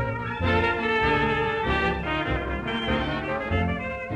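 Vintage swing dance band playing an instrumental passage, with the brass section, trumpets and trombones, out in front.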